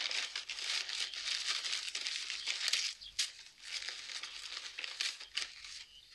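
Paper parcel being unwrapped by hand: stiff wrapping paper crinkling and tearing. The crackling is dense for about the first three seconds, then turns into more broken rustles.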